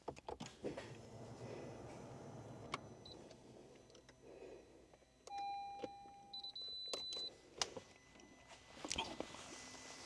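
Faint clicks in a car cabin as the ignition is switched on with the push-start button, engine not running. About five seconds in comes a steady electronic beep lasting about a second, followed by a brief higher beep.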